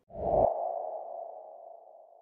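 Transition sound effect for an animated title card: a short low hit with a quick upward whoosh, then a sonar-like electronic tone that fades away over about two seconds.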